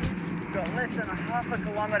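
Steady wind and road rumble from a bicycle in motion, picked up by a handlebar-mounted camera, with a man's indistinct voice over it. Background music cuts off at the start.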